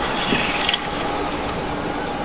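Steady drone of a boat at sea: a constant mechanical hum under a rushing wash of wind and water.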